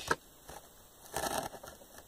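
Faint handling noise as an arm reaches across a cluttered electronics bench: a sharp click right at the start, then a brief rustle a little over a second in.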